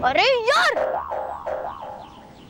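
Cartoon-style 'boing' comedy sound effect: a springy tone that wobbles up and down in pitch twice, then repeats in smaller bounces that fade out.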